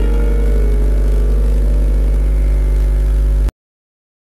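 Santoor strings ringing out and slowly fading after the final struck notes, over a steady low hum; the sound cuts off abruptly about three and a half seconds in.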